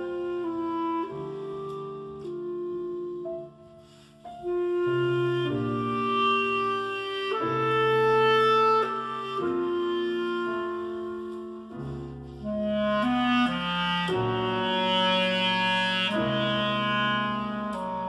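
Clarinet playing long sustained melodic notes over piano accompaniment, the music dropping quiet briefly about three and a half seconds in before picking up again.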